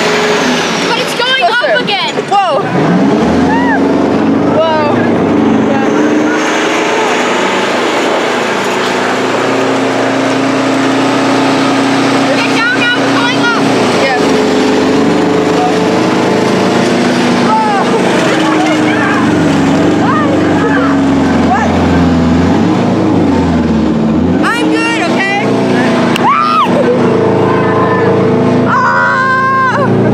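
Tank engine running steadily as the tank drives along, with the noise of its tracks, heard from on top of the hull. The engine note shifts up and down several times, with a lower stretch a little past twenty seconds.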